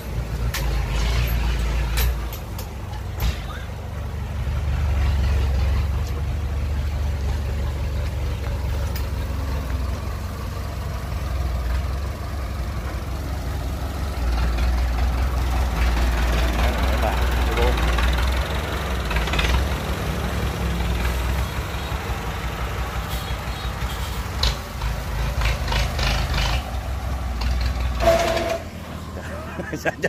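Massey Ferguson 185 tractor's four-cylinder diesel engine running under the load of a heavy trailer, its level swelling and easing. Near the end it stalls and cuts out.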